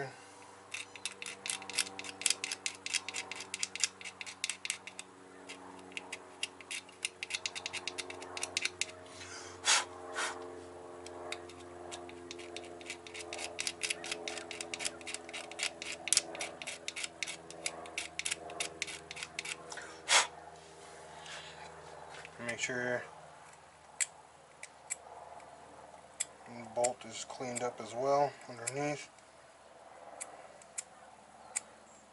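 Razor blade scraping paint off a metal ground point on the engine: rapid scratching strokes, densest over the first several seconds, then sparser scrapes and ticks. The aim is a clean ground surface for the wiring.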